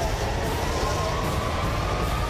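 Tension background score: a low rumbling drone under a thin tone that rises slowly in pitch.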